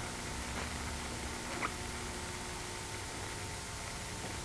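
Oxy-acetylene torch flame hissing steadily while fuse-welding the thin edges of two steel disc blades, with one faint tick about a second and a half in.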